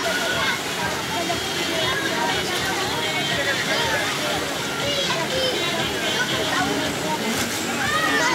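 Many children's voices talking and shouting over one another in a lively babble, with water splashing and pouring into a pool.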